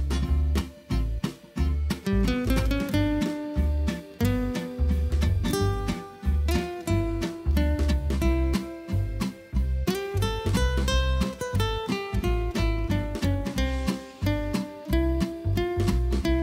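Background music: plucked acoustic guitar playing a steady run of notes over a repeating bass line.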